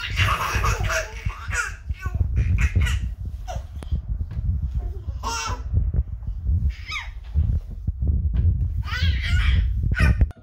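Toddlers laughing, squealing and babbling in short bursts during a game of peekaboo, with one high squeal about halfway through. A dense low rumble of bumping and handling runs underneath.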